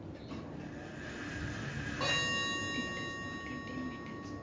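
A bell rings once about halfway through, a sudden strike whose clear tones ring on and fade over about a second and a half.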